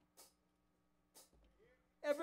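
Near silence, broken by two faint clicks about a second apart.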